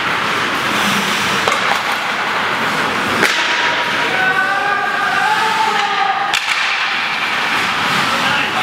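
Ice hockey play on a rink: a steady hiss of skate blades on the ice with several sharp cracks of sticks and puck, a second or more apart. Raised voices call out in the middle.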